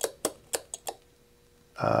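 A quick run of about five sharp clicks in the first second as the HP 355A attenuator's camshaft is turned by hand, its cams clicking the switch contacts in and out.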